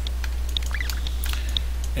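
Steady low electrical hum from the recording setup, with a few faint computer-mouse clicks as the 3D viewport is navigated.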